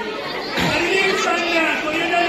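Several voices talking at once: indistinct chatter.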